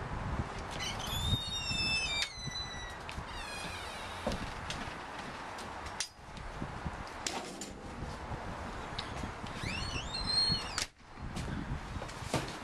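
Outdoor background noise with birds chirping in two short spells, about a second in and again near the end, and the sound breaking off abruptly twice.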